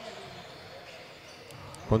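Faint dribbling of a basketball on a hardwood court, with two short, sharp sounds about one and a half seconds in.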